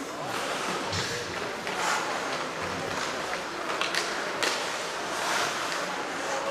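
Ice hockey play: skate blades scraping the ice, with a few sharp clicks of sticks striking the puck about four seconds in, echoing in a large arena.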